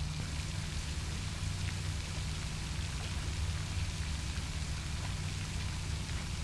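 Steady, even hiss of water falling from a pond's spray fountain, with a steady low rumble underneath.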